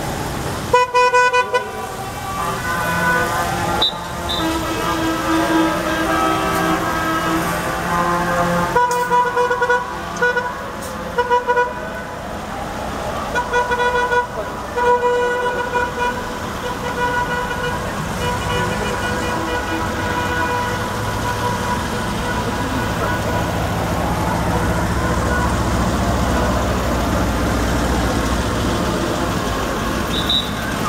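Vehicle horns honking in repeated blasts, clustered about a second in, around nine to eleven seconds in and around fourteen seconds in, over the engines of a column of cars and trucks driving past. A rising tone recurs now and then over the traffic, and the engine rumble gets louder near the end.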